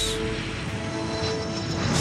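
Fighter jet engine noise, a steady rush as a jet launches off an aircraft carrier deck, over background music with long held notes.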